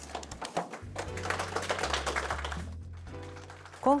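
Background music with a patter of light hand clapping from a small seated audience, thickest about a second in and thinning out before the end.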